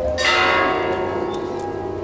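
Church bell struck once about a fifth of a second in, its tones ringing on and slowly fading, over the dying ring of the stroke before.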